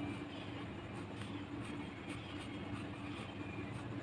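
Faint scratching of a ballpoint pen writing on ruled notebook paper, a series of short strokes over a steady low hum.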